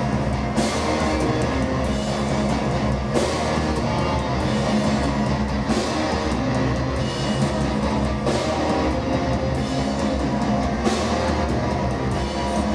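Live metal band playing at full volume: distorted electric guitars over a drum kit, with heavy accents about every two and a half seconds.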